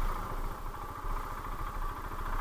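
Motorcycle engine running steadily at low revs, with no revving, as the bike rolls slowly over a muddy trail.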